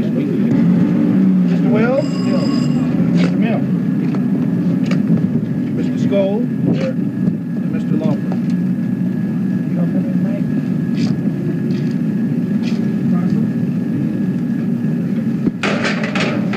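Location sound from old news film: a steady low din of voices and outdoor noise, with a few scattered clicks.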